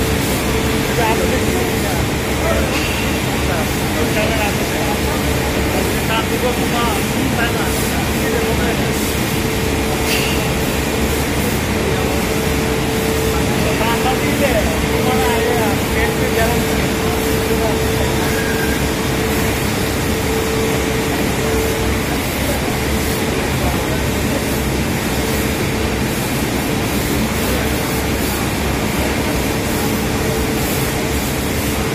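Steady, loud mechanical noise with a constant mid-pitched hum, with people talking faintly over it.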